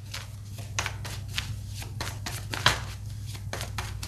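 Tarot cards being shuffled by hand: a run of quick, irregular card flicks and slaps over a steady low hum.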